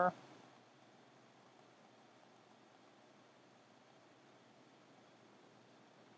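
Near silence: a faint, steady background hiss with no distinct events, after the last word of speech cuts off right at the start.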